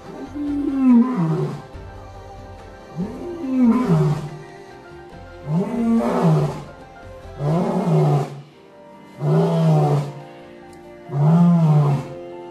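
White lion roaring loudly in a bout of six roars, each rising then falling in pitch, coming closer together as the bout goes on. Music plays underneath.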